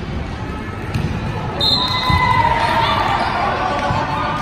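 Volleyball rally in a gym: dull thumps of the ball being struck, then, from about a second and a half in, a louder stretch of shouting and calling from players and spectators as the point plays out.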